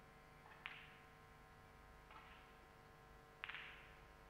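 Snooker balls clicking during a shot: a sharp click about half a second in, a fainter click about two seconds in, and a louder quick cluster of clicks near the end.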